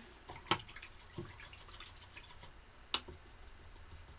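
Paintbrush being rinsed in a water jar: a few sharp taps of the brush against the jar, the strongest about half a second in and about three seconds in, with small drips and ticks of water between them.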